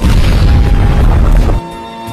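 An explosion sound effect: a loud boom with a deep rumble that lasts about a second and a half and then cuts off suddenly.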